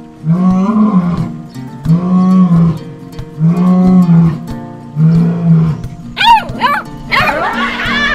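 A series of four drawn-out lion roars, about one every second and a half. From about six seconds in, high, squeaky chirping calls take over.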